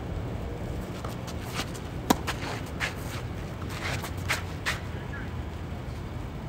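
A tennis ball struck by a racket with one sharp pop about two seconds in, amid several scuffing footsteps of players moving on a clay court, over a steady low background rumble.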